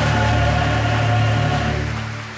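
Mixed choir with keyboard accompaniment holding a long sustained final chord, beginning to die away near the end.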